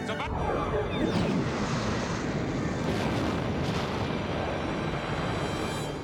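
Television sound effect of a starship exploding in a warp core breach: a sudden blast with a falling sweep, then a long noisy rumble that cuts off sharply at the end.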